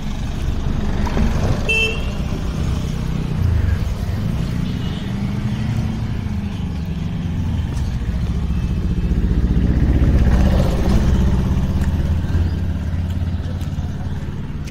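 Street traffic: a motor vehicle's engine running close by, a low steady rumble that grows a little louder about ten seconds in.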